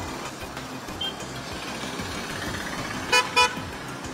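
Road traffic noise from passing vehicles, with a vehicle horn giving two short toots in quick succession about three seconds in.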